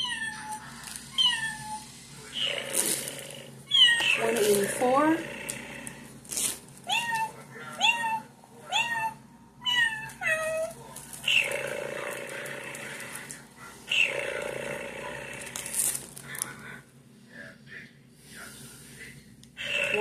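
A cat meowing over and over: about nine short calls that drop in pitch, mostly in the first half. Later come two longer, rough, noisy sounds of about a second and a half each.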